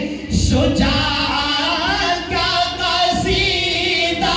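Two men singing devotional verses unaccompanied into microphones, their voices amplified through the hall's sound system. There is a brief break just after the start, and then the singing runs on in long, gliding phrases.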